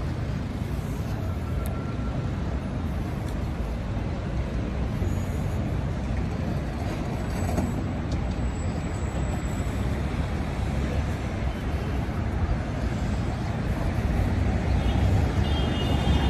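Steady traffic noise from a city road: a low, even rumble of passing vehicles that grows slightly louder near the end.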